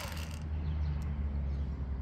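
Electric fillet knife running with a steady low hum as its blades cut along a white bass.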